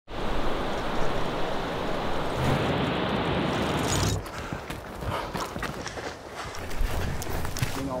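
Rushing white water of a waterfall, a steady dense rush that cuts off suddenly about four seconds in. A quieter stretch of scattered clicks and knocks follows.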